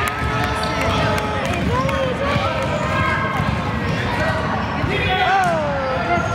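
Gym sounds of a children's basketball game: spectators' and players' voices calling out, with a basketball bouncing on the hardwood court.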